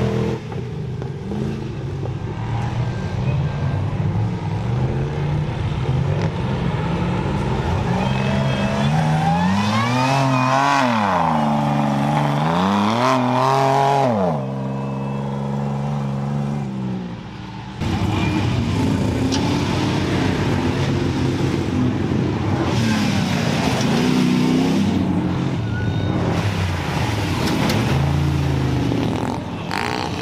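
Off-road race truck engine running hard around a dirt course, the revs climbing and falling as it accelerates and backs off, with a strong rise and drop around a third of the way through. The sound dips for a few seconds and then comes back suddenly louder just past halfway.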